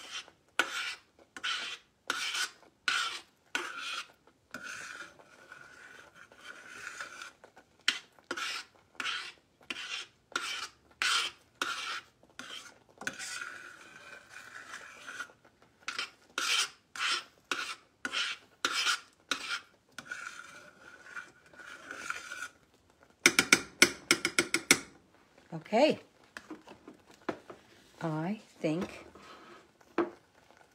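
A metal spoon scrapes around the bottom of a stainless steel saucepan in steady, rhythmic strokes, stirring a raspberry sauce as its cornstarch thickens it. Near the end comes a quick run of sharp taps.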